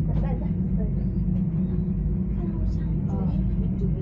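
Steady low rumble and hum inside a moving Nokogiriyama Ropeway aerial tramway gondola, its front and rear windows open, with faint fragments of voices over it.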